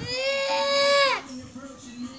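Young girl crying: one long, high wail lasting about a second that drops in pitch as it ends, then fades to quiet.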